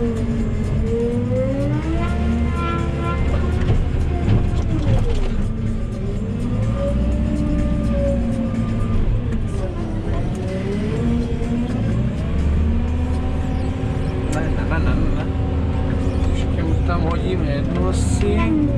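Diesel engine of a JCB telehandler heard from inside its cab, revving up and down repeatedly as the loader drives and works its bucket, loading manure.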